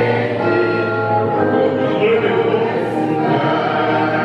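Live amplified music with a male singer singing into a handheld microphone, the sound full and steady with backing voices.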